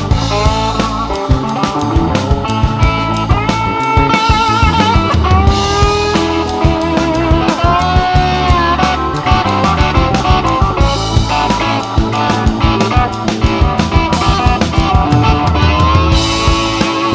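Blues-rock band playing an instrumental break: a lead guitar line with sliding bends and vibrato over drums and bass.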